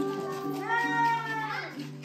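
Group of children singing together, holding long notes. A single high child's voice sings out over them from about half a second in until about a second and a half.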